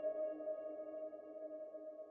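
The last held chord of an electronic intro jingle: a few steady tones ringing on and slowly fading out after the beat has stopped.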